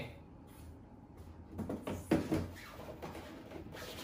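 Filter being fitted into a Samsung AX60R5080WD air purifier's plastic housing: a few short plastic knocks and rubbing, loudest about two seconds in.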